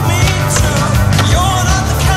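Rock music with the sound of a skateboard riding along a wooden ledge mixed in under it.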